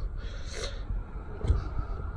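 A short breath by a person close to the microphone, about half a second in, over a low steady rumble.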